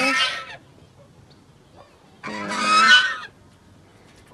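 Domestic goose honking: a harsh, rasping call of about a second, two and a half seconds in, after another call trails off at the start.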